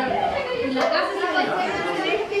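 Several children chattering over one another, with no words standing out clearly.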